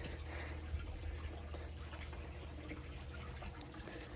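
Faint, steady running water under a low, even hum.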